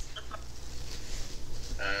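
A drag on a Raz disposable vape: a faint, airy hiss of air drawn through the device.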